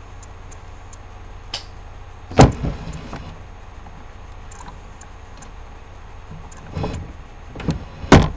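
A few sharp knocks. The loudest comes about two and a half seconds in and a pair comes near the end, over a steady low hum.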